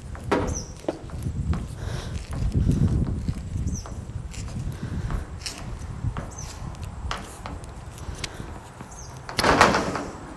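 Scraping and clicking from a hand deburring tool chamfering the cut end of blue plastic compressed-air tubing, among scattered handling knocks, with one louder scraping knock shortly before the end.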